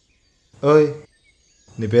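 Speech only: one short spoken utterance about half a second in, then talk starting again near the end, with dead silence between.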